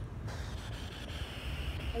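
Street traffic: a steady low rumble, with a hissing rush of a passing vehicle that comes in suddenly about a quarter of a second in and holds.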